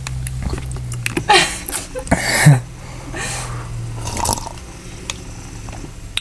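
Close-up handling noise on a phone microphone: a few rubbing and scraping sounds and light taps against the camera, the loudest about two and a half seconds in, over a steady low hum.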